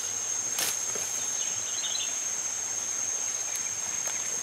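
Steady high-pitched drone of a forest insect chorus, with one sharp snap about half a second in and a few faint chirps in the middle.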